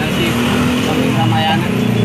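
Road traffic close by: car and motorcycle engines running with a steady low hum.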